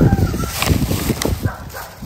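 A dog barking in a run of short, quick yelps.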